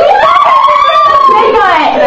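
A high voice holding one long, slightly wavering cry for about a second and a half, then sliding down into excited voices.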